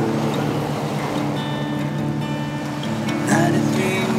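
Acoustic guitar strumming chords in an instrumental passage, with a male voice coming in singing near the end.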